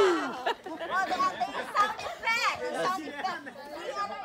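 A group of young people chattering and calling out over one another, many voices overlapping and no single speaker clear.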